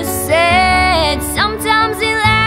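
A young girl's singing voice carrying a held, ornamented vocal line over steady instrumental accompaniment. It opens with an audible breath and has a quick upward slide in pitch about one and a half seconds in.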